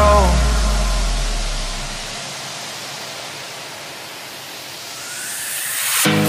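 A change between two background music tracks. An electronic track ends with a deep bass note that fades over about two seconds, leaving a steady hiss. A noise sweep then rises toward the start of the next song.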